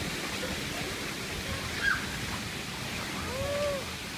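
Steady rushing poolside water noise, with a brief high squeak about two seconds in and a short rising-and-falling voice sound near the end.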